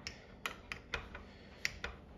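Key clicking in a door lock as it is tried and turned without the door unlocking: about half a dozen sharp metallic clicks, unevenly spaced.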